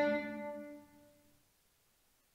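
A single sampled viola note, the D above middle C, played back by MuseScore as the note is selected, at its plain tempered pitch with tuning still at 0 cents. The note is dying away and has faded out by about a second in.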